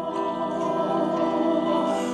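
Live concert music from an orchestra, holding a sustained chord of several steady notes.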